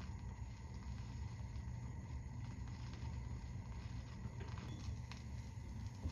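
Silent groove between two tracks of a vinyl LP on a record player: a steady low rumble and faint hiss, with a few small surface clicks about four and a half to five seconds in.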